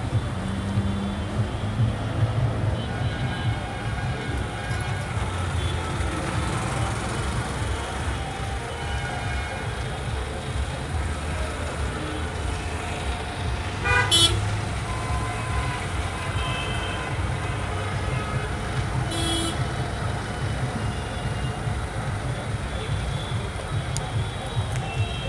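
Busy city road traffic: a steady rumble of engines, with vehicle horns tooting now and then. The loudest horn comes about fourteen seconds in.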